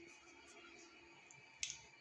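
Near silence between spoken phrases, broken by one short, sharp click about one and a half seconds in.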